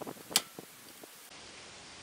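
A wrench clicking sharply once against a metal hose fitting on a welder's solenoid valve, about a third of a second in, with a few softer taps, then low steady hiss.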